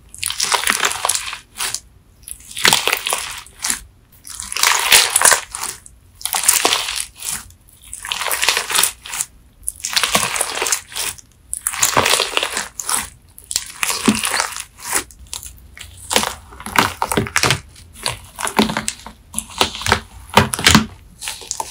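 Slime full of crispy wax-coated melamine sponge flakes being squeezed and kneaded by hand, crackling and crunching in repeated bursts every second or two. It is recorded on a phone's built-in microphone.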